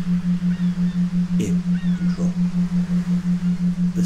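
A steady low hum tone pulsing rapidly and evenly, about eight times a second, with a few faint gliding calls above it about one and a half to two seconds in.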